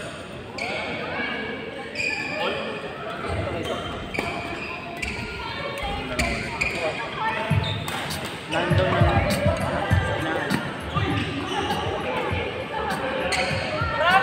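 Doubles badminton rally: sharp racket hits on the shuttlecock and shoes squeaking on the court mat, with heavy footfalls that are loudest in the second half. Voices sound in the background.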